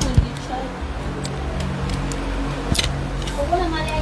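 Indistinct voices over background music, with two sharp clicks, one just after the start and a louder one a little before three seconds in.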